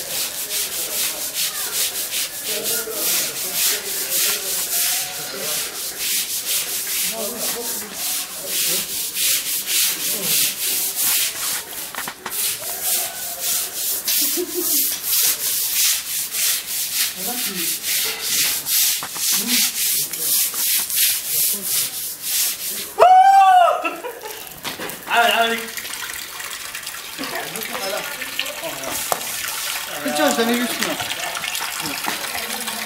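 Long-handled floor brush scrubbing a wet tiled floor in quick, even strokes. The scrubbing stops about 23 seconds in, where a single loud sound rises and falls in pitch.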